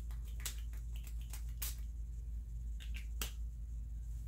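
Small sharp clicks and taps from handling a small perfume sample bottle, its cap and spray nozzle, coming in quick clusters in the first two seconds and again around three seconds in, over a steady low hum.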